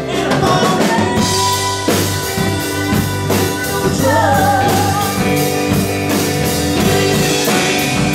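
Live rock band playing: drum kit and electric guitars driving a steady beat, with a woman singing over them.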